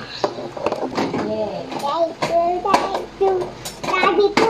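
A small child's voice talking and vocalising without clear words, with several sharp clicks and knocks as things are handled at the counter.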